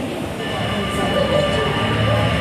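A metal band's intro drone starting: several steady high tones come in about half a second in, with a low hum building beneath them, over crowd chatter.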